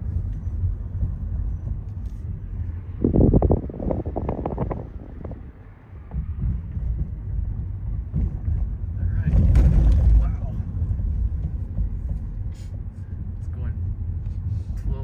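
Steady low rumble of a car's tyres and engine heard inside the cabin while driving on a cracked paved road, with louder stretches about three to five seconds in and again around ten seconds in.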